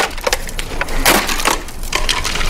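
An acoustic guitar being smashed: several blows, its wooden body cracking and splintering, the loudest about a second in.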